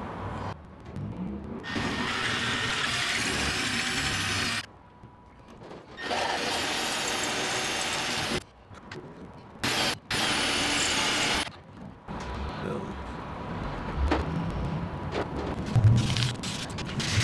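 Cordless drill match-drilling bolt holes through an aluminium lift-strut bracket, with cutting oil on the bit. It runs in three bursts of a few seconds each, starting and stopping abruptly, with short pauses between them.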